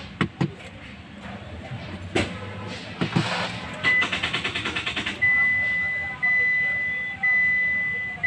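Hyundai Xcent starter chattering in a rapid tak-tak-tak, about ten clicks a second for about a second, when the start button is pressed: the battery is fully discharged, so the starter motor does not get enough voltage to crank the engine. Then a steady high warning beep from the car repeats about once a second.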